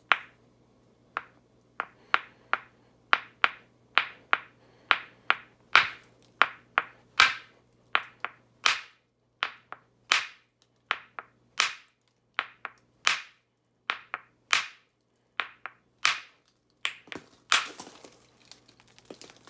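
A round hammerstone knapping the edge of a block of Onondaga chert: a steady run of sharp stone-on-stone clicks, about two to three blows a second, after a short pause at the start.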